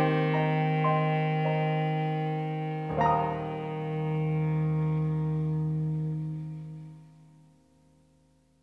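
Clarinet and grand piano playing the closing bars of a piece: a long held low note under single piano notes, then a chord struck about three seconds in. The music dies away to near silence around seven seconds in.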